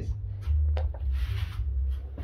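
A miniature circuit breaker's toggle switched on by hand, a single sharp click a little under a second in, followed by a brief rustle. A steady low hum runs underneath.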